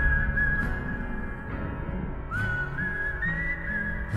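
A slow whistled tune in two phrases, the second stepping upward, over a low sustained musical drone.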